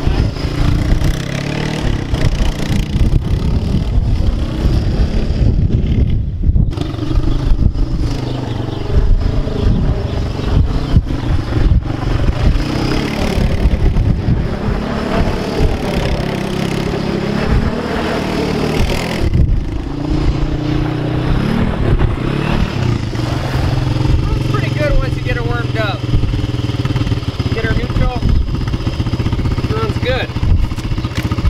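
1992 Honda TRX250X ATV's single-cylinder engine revving up and easing off as the quad is ridden around the yard, with a brief dip twice. Wind rumbles on the microphone underneath.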